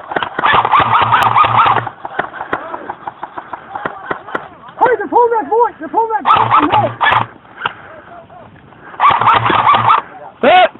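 Distant shouting voices with no clear words, loud in three bursts near the start, around the middle and near the end, over scattered sharp clicks.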